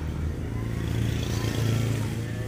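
An engine running steadily at idle, a low even hum that grows a little stronger about halfway through.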